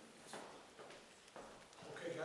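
Faint footsteps, about three steps roughly half a second apart.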